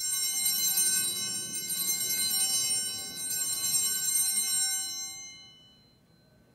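Altar bells, a cluster of small hand bells, shaken in a continuous bright ringing for about five seconds and then dying away. They mark the elevation of the consecrated host at Mass.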